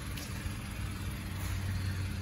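A steady low mechanical hum, like an engine idling, with no clear changes.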